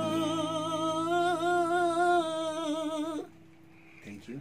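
A man holds the final sung note of a Nepali song for about three seconds, with a slight vibrato, over a ringing acoustic guitar chord, then stops.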